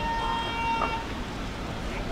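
A car horn sounds one steady note for about a second, then stops.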